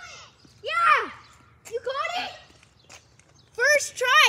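Children's voices shouting in high pitch: three loud calls about a second apart, the last near the end.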